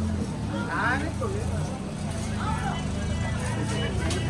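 Busy market ambience: scattered background voices talking over a steady low rumble.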